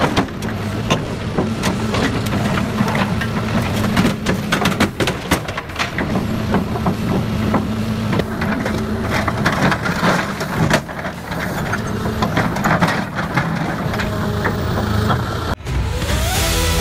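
A heavy machine's engine runs steadily under a hydraulic scrap shear cutting up an old crawler loader. Frequent sharp cracks and crunches of metal come from the shear, and the sound cuts off abruptly near the end.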